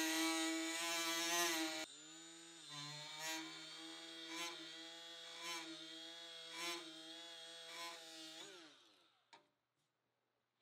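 Milwaukee M12 cordless die grinder with a Pferd medium-hard grinding disc running on hot-rolled steel at about 10,000 RPM, giving a steady high motor whine with grinding rasp. It is loud for the first two seconds, then quieter, swelling about once a second as the disc works back and forth. Near the end the motor winds down with a falling whine and stops.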